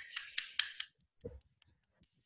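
One person clapping over a video call: a quick run of claps in the first second, then it stops.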